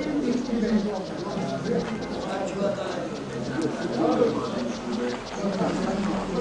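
Bird cooing, pigeon-like, with indistinct talk in the background.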